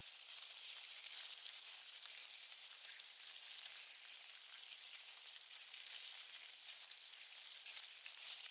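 Faint, steady high hiss with a fine crackle running through it: a low background noise bed with no clear source.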